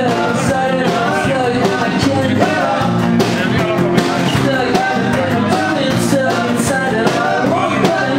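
Small acoustic band playing a rock song live: a man singing over a strummed acoustic guitar, with light percussion hits.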